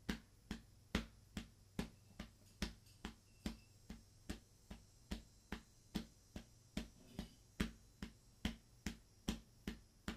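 Soft hand pats on the chest keeping a steady duple beat, about two and a half pats a second.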